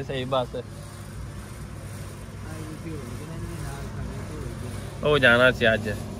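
Low steady vehicle-engine rumble heard from inside a passenger van's cabin, with a few words spoken at the start and again near the end.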